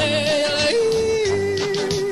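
A Kapampangan song: a voice holds one long note, then steps down to a lower one held for about a second, over backing music with a steady low beat.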